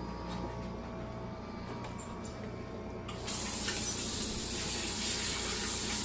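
A low steady hum with a few faint ticks. About three seconds in, a kitchen faucet turns on and runs a steady stream into the sink, with hands being rinsed under it.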